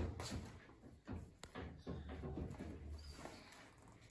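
Faint scattered taps and light knocks of hands setting pão de queijo dough balls onto an aluminium baking tray, over a low hum, with one sharp click a little over a second in.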